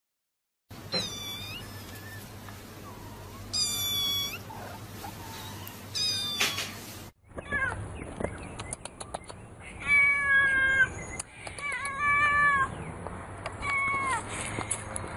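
Cats meowing: three separate high meows a couple of seconds apart. After a sudden cut about halfway, four more meows follow, each dropping in pitch at the end.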